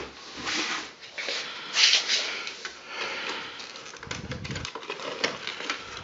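Paper packaging rustling as it is handled, in irregular bursts, with a few light clicks and knocks of handling near the end.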